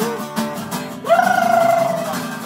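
Strummed steel-string acoustic guitar, capoed, playing chords under a male voice singing rock. About a second in, the voice holds one long sung "oh" with a slight waver.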